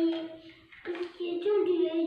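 A young child singing in long held notes, with a brief break a little under a second in before the next phrase.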